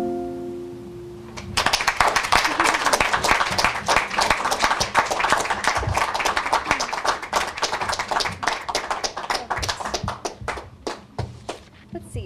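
The last notes of an acoustic guitar ring and fade. About a second and a half in, a small audience breaks into applause, which thins to scattered claps near the end.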